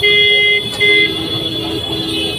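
Loud horn-like tones switching between a higher note and a lower one, in short phrases of about half a second that stop and start.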